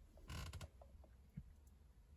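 Near silence, broken by one brief creak about a third of a second in and a few faint clicks after it.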